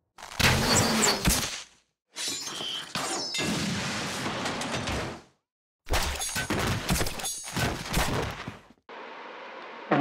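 Crashing and shattering sound effects of breaking debris in three long bursts separated by brief silences, followed by a quieter steady rumble in the last second.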